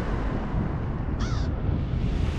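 A raven gives a single short caw about a second in, over a low, steady rumble.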